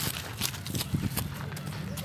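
Footsteps crunching over dry fallen leaves and grass: a toddler's small, uneven steps with an adult walking alongside, several light crackles a second.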